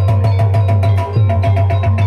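Gamelan music accompanying an ebeg (kuda lumping) dance: a steady, loud drum beat under repeated struck metal notes.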